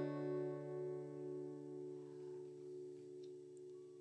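Final chord of an acoustic guitar ringing out after the last strum, fading slowly.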